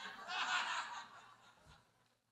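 A small audience chuckling briefly and faintly, dying away about a second in.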